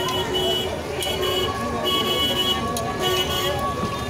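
Busy street noise: people talking, passing traffic and several short horn toots.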